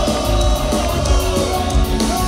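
Ska band playing live through a large sound system, with drums, bass, electric guitars and a saxophone section, heard from within the crowd.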